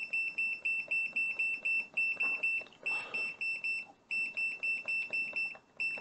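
KKMoon KKM828 handheld graphical multimeter beeping on each key press: short, high-pitched beeps about five a second, in four runs with brief pauses, as a button is pressed over and over to step up the scope's trigger level.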